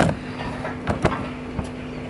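Handling noise as a camera is moved and set in place: a thump at the start and a couple of short knocks about a second in, over a steady low hum.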